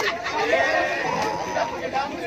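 People's voices talking and chattering, some overlapping.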